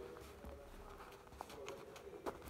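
Faint, low cooing of a dove over quiet room tone, with a few soft ticks from hands handling pinned fabric.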